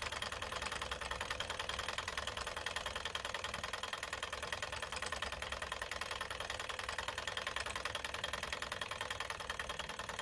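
Small model Stirling engine running steadily on a methylated-spirits burner, its piston and flywheel linkage clattering in a fast, even rhythm.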